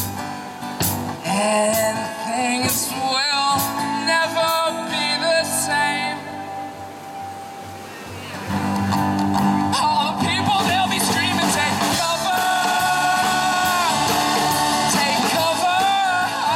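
Live acoustic band playing a song: upright bass, two acoustic guitars and a drum kit. There are sharp drum hits in the first few seconds, the music drops quieter about seven seconds in, and the full band swells back about nine seconds in.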